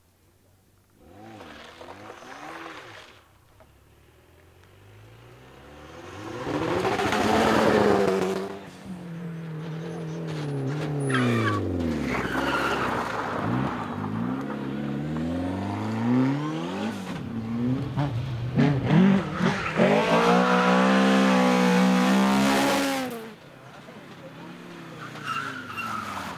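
Rally cars driven hard past one after another: engines revving high and changing gear, pitch rising and falling as each one passes, with tyres skidding on loose gravel. The loudest stretch is a long, high-revving run near the end.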